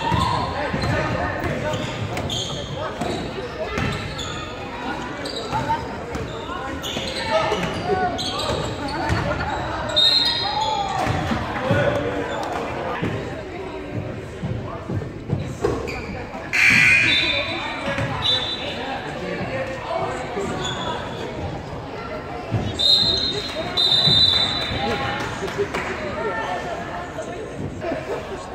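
Basketball bouncing on a hardwood gym floor, with short high squeaks and voices echoing in a large gym.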